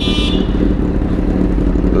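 Motorcycle engine idling steadily. A short high-pitched beep sounds right at the start.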